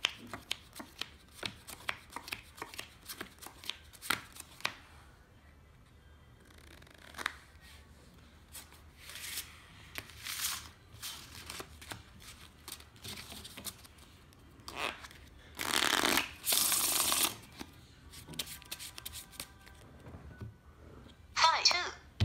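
Playing cards being handled on a felt table: a quick run of flicks and clicks as cards are dealt and picked up, then later two loud riffle-shuffle bursts of about a second each as the deck is shuffled.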